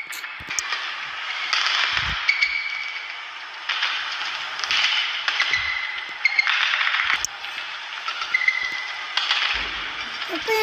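Badminton rally: sharp strikes of the shuttlecock off the rackets and several short, high squeaks of shoes on the court, over a steady noisy hall background.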